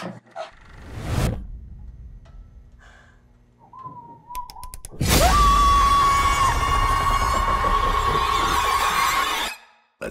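Horror-trailer sound design: a sharp hit about a second in, then a low drone with a wavering tone. At about five seconds a loud, harsh burst of noise starts, carrying a high sustained shriek that slides up and then holds one pitch, and it cuts off suddenly just before the end.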